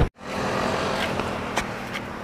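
Car noise by a highway: a steady rush with a faint low hum that slowly eases off.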